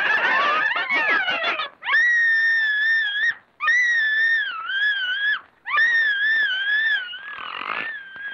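Cartoon sound effects: a quick jumble of squealing cries, then three long, high, wavering wails with short pauses between them, and a fainter fourth starting near the end.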